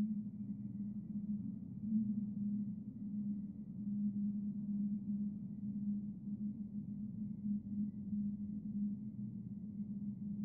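Low, steady droning tone with a slight waver: an ambient drone in a horror film's soundtrack.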